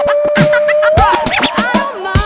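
DJ turntable scratching over a hip-hop drum beat in a mixtape blend, with short back-and-forth pitch sweeps and a long held note that rises in pitch about a second in.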